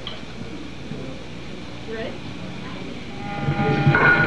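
Low live-venue room noise with faint voices, then about three seconds in an electric guitar starts ringing a sustained chord through the amplifier, louder than the room noise before it.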